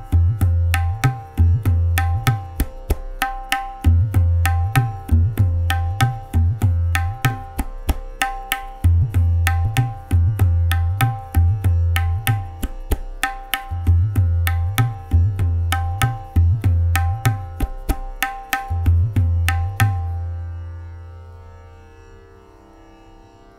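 Tabla playing the Teentaal theka (dha dhin dhin dha) in chaugun, four times the base tempo. Fast strokes run over the bayan's deep ringing bass, which drops out for the khali section about every five seconds. The playing ends about twenty seconds in on a stroke whose bass rings and fades away.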